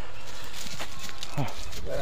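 Light footsteps of a sheep and of a person walking on straw-covered dirt, over a steady low rumble. A short, low, falling voice sound comes about a second and a half in.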